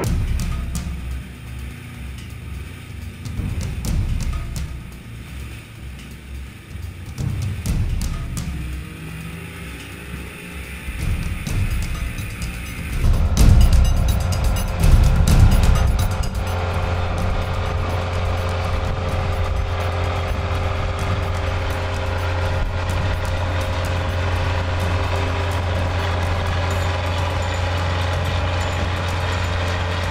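Engine noise from the inflatable lifeboat's outboard motor and its launch-and-recovery tractor, under background music. About thirteen seconds in it grows louder, and from about sixteen seconds a steady low engine hum holds on.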